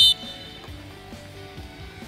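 One short, loud, high-pitched blast of a coach's whistle at the very start, signalling the players to drop into push-ups, over background music with guitar.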